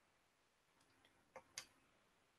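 Near silence: faint room tone, with two brief faint clicks about one and a half seconds in.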